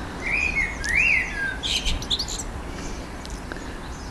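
A bird calling: a few whistled notes in the first second and a half, one of them rising and falling, then a quick run of high chirps about two seconds in, over a steady low background rumble.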